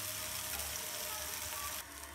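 Grated-potato hash-brown patties frying in oil in a non-stick pan: a steady sizzle that drops off sharply near the end.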